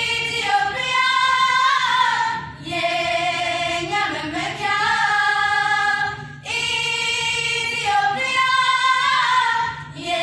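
A group of teenage girls singing together unaccompanied, in phrases of about two seconds with short breaks between them.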